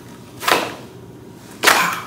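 Silicone baking mat being unrolled and laid flat on a wooden countertop: two short swishes about a second apart, the second louder.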